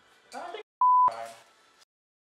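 A single short steady beep, about a third of a second long and about a second in, edited in as a censor bleep over a spoken word.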